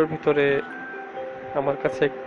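Background music of sustained steady notes, with a voice in two short phrases: one at the start and one about three-quarters of the way through.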